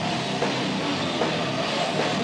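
Live heavy metal band playing loud, with a drum kit driving the music.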